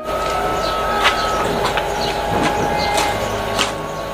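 Steady outdoor background noise with a few sharp steps on gravel, some of them about half a second apart.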